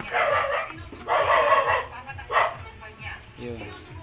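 A dog barking: three loud barks in the first two and a half seconds.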